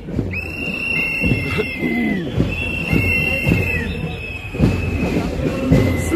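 Long, steady whistle blasts at two slightly different high pitches, each lasting a second or two and repeating, sometimes overlapping, over the chatter of marchers walking along.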